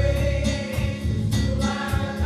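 Live gospel music in church: several voices singing over a band with heavy bass and a steady beat of regular drum hits.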